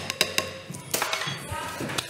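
Knife chopping on a wooden cutting board: a quick run of sharp taps in the first half second, then a louder stroke about a second in.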